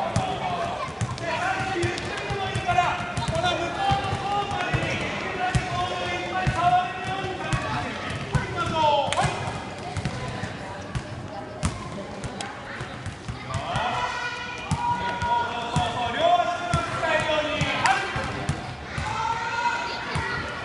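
Many footballs being dribbled and kicked on a wooden gym floor, a scatter of irregular soft thuds and knocks, with children's voices calling out over them, all echoing in a large hall.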